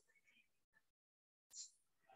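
Near silence: faint room tone, dropping to dead silence for about half a second in the middle.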